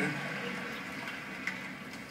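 Audience applause from a projected video, heard through the room's playback speakers as a steady hiss that slowly fades.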